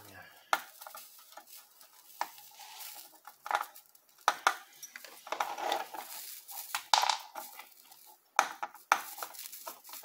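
Soldering iron tip scraping and knocking against the solder joints of a motherboard while capacitors are desoldered, giving irregular clicks and short scrapes.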